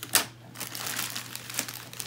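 Plastic poly mailer bag crinkling as it is handled and pulled open by hand, with a sharp, loud rustle just after the start followed by steady crinkling.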